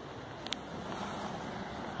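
Steady low background hiss of a quiet room, with one brief click about half a second in.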